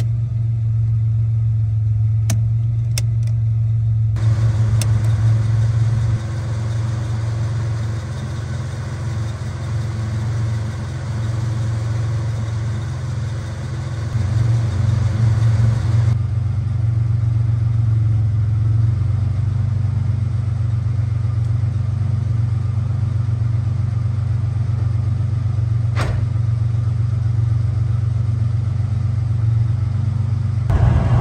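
A 1986 Ford Bronco II's engine idling steadily at about 800 rpm, with a few sharp clicks in the first five seconds and another late on.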